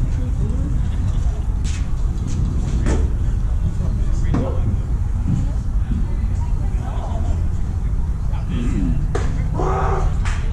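Steady low rumble of wind on the microphone, with distant shouts of players and a few sharp knocks, two close together about two and three seconds in and another near the end.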